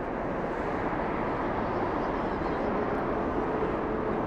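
Airbus A380's four jet engines running at taxi power close by, a steady rush of engine noise. A faint steady whine joins about halfway through.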